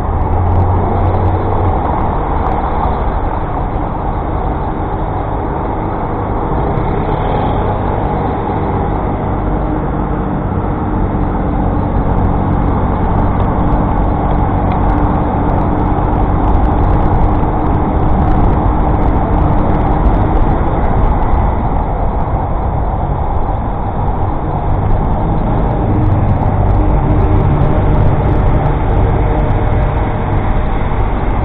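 Steady, loud wind and road noise from a camera mounted on a moving Brompton folding bike, mixed with the run of nearby city traffic.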